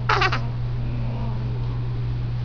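A newborn baby's brief high whimper, falling in pitch, just after the start, over a steady low hum.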